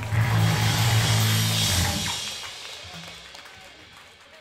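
A hardcore band hits a loud, held low chord on amplified instruments with a cymbal wash. It sustains for about two seconds, then rings out and fades.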